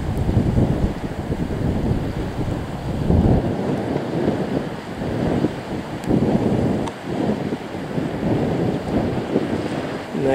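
Strong wind buffeting the microphone: a low rumble that swells and dips in gusts.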